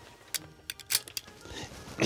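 Aircraft lap-belt metal buckles being handled and fastened: a quick run of about half a dozen sharp clicks and clinks in the first second and a half.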